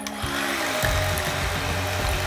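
Electric hand mixer running steadily, its beaters whisking raw eggs into a bowl of butter, sugar and syrup batter, starting about half a second in.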